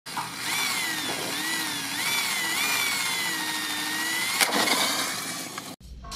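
Electric motor of a radio-controlled car whining over a steady hiss, its pitch wavering up and down with the throttle. A sharp click comes about four and a half seconds in, and the sound cuts off suddenly just before the end.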